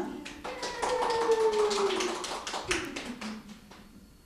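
A quick, irregular series of sharp clicks or taps, with one long human vocal sound sliding slowly down in pitch in the first half. The sounds thin out toward the end.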